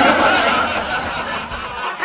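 A breathy, unpitched laugh, like a snicker, that starts suddenly and runs for about two seconds.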